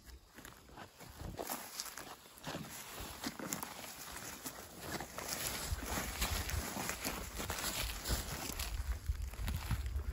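Footsteps through tall grass and bracken ferns, with the stems brushing and rustling against legs at each irregular step.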